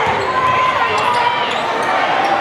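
Basketball dribbled on a hardwood gym floor amid the steady chatter and shouts of a packed crowd, with a few sharp knocks about a second in and near the end.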